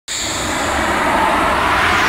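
Intro sound effect: a loud rushing whoosh that starts abruptly and swells slightly, with no clear pitch.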